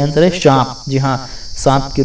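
A man speaking Hindi, with a short pause just before the end, over a steady high-pitched hiss in the background.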